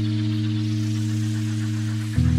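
Electronic bass music: one held synth chord, deep and steady, with a hissing noise layer above it.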